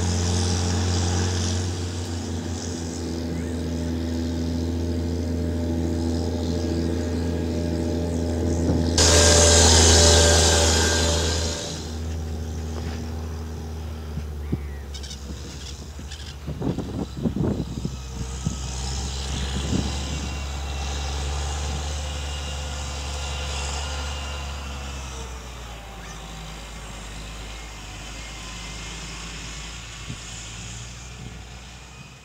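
Large diesel engine of a Challenger TerraGator TG 8333 self-propelled slurry injector running steadily under load as it works the field. About nine seconds in, a loud rushing hiss rises over the engine for about three seconds, and a little past halfway there is a scatter of short sharp sounds. The engine grows quieter near the end.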